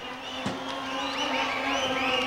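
Wrestling arena crowd heard during a pause in the commentary: a mass of voices with many short high-pitched shouts rising and falling, over a steady low hum. One brief thud comes about half a second in.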